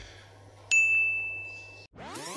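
A single bell-like "ding" sound effect, struck about two-thirds of a second in. It is one clear high tone that rings for about a second and then cuts off suddenly.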